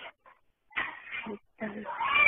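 A person's voice in two short sounds after a brief pause, heard through a narrow-band phone-call recording.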